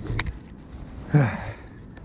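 A sharp click just after the start, then a man's short sigh falling in pitch about a second in, over a low steady rumble.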